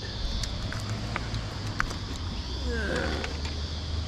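Outdoor ambience: a steady low rumble like distant traffic under a steady high insect drone, with a few small clicks and taps.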